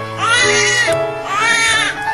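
Newborn baby crying in repeated rising-and-falling wails, about one a second, with steady background music underneath.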